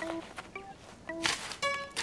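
Sparse plucked-string cartoon underscore of short single notes, with two brief scratchy sound effects a little past halfway, fitting a small trowel digging into garden soil.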